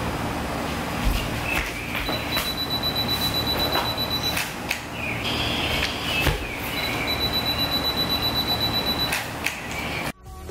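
A camera's self-timer beeping: a high, fast-pulsing electronic tone sounds twice, about two seconds each time. Footsteps and light knocks fall around it.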